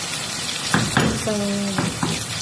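Chicken and potato pieces sizzling in a hot frying pan while a wooden spatula stirs and scrapes them, with a couple of sharp knocks of the spatula against the pan just under a second in.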